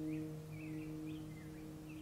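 The last acoustic guitar chord of the song ringing out and fading away, with faint bird chirps over it, a few short twittering calls.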